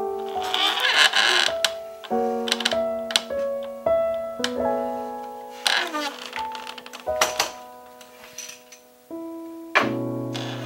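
Gentle piano music, with the wooden clatter and knocks of a hand loom being worked: a few sharp strokes about a second in, again near six and seven seconds, and once more near the end.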